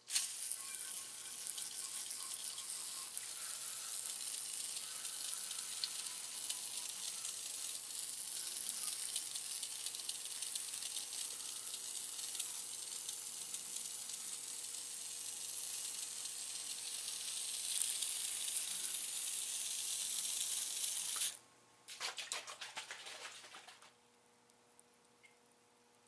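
Aerosol paint stripper spraying in one long continuous hiss that cuts off suddenly about three seconds before the end, followed by a faint, fading crackle.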